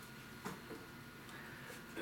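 Quiet room tone in a pause between spoken sentences, with a single faint click about half a second in.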